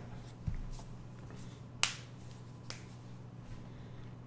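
A steady low hum of room tone with a few short, sharp clicks. The sharpest click comes about two seconds in and a smaller one follows shortly after.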